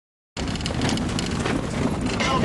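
Wind buffeting the microphone over the low rumble of a vehicle driving. It starts abruptly just after the start and then holds steady.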